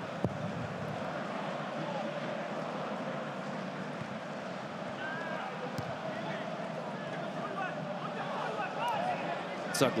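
Ambience of a professional football match played in a near-empty stadium: a steady background hiss with faint shouts from players on the pitch now and then, and a single thud near the start.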